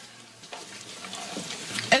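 A short pause filled by a faint, even hiss of background noise, with a spoken word starting at the very end.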